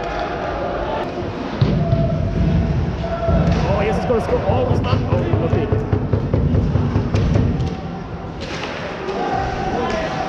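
Supporters' drum beating repeatedly, with the voices of the crowd, echoing in a large ice hockey arena.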